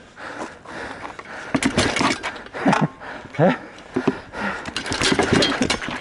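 Gladiator sparring with shields and training weapons: a rapid series of knocks and clatters as weapons strike shields and metal armour, starting about a second and a half in and growing busier near the end, with grunts and a short exclamation between the blows.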